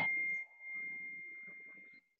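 A single high chime tone, held and slowly fading, after a sharp knock at the start; the sound drops out briefly about half a second in.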